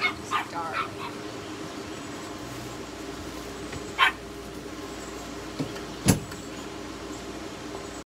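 A dog yipping a few short times, several in quick succession at the start and once more about four seconds in, over a faint steady hum. A single sharp knock about six seconds in.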